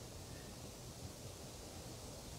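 Faint steady background hiss: room tone, with no distinct sound event.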